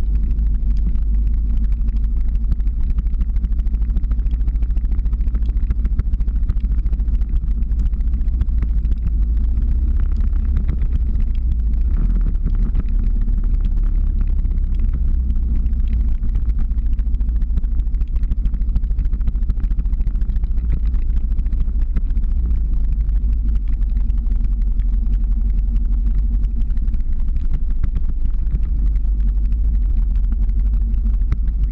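Engine of a slow-moving vehicle running steadily at low speed, a deep continuous rumble with a steady low hum and no change in pace.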